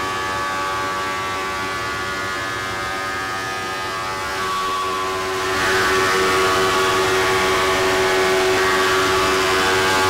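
Wood-Mizer MP260 planer-moulder running with a steady, many-toned machine whine as its cutterheads plane and profile a white oak board into tongue-and-groove flooring. The sound grows louder and rougher about five seconds in and stays at that level.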